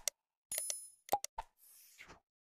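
Sound effects of an animated subscribe-button reminder. A few short clicks and pops, a bell-like ding about half a second in, another pop and click a little past one second, then a faint soft whoosh near the end.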